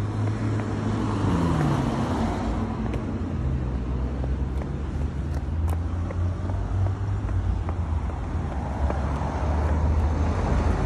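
Road traffic: a steady low rumble of vehicle engines and tyres, with a continuous hum underneath.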